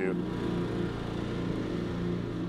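Steady outdoor street noise with a motor running.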